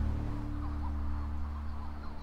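Soft background music of low sustained tones, dropping in level at the start, with a few faint short bird chirps.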